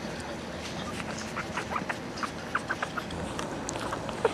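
Week-old Cavalier King Charles Spaniel puppies making a string of short, high squeaks while nursing against their mother, most of them close together in the middle.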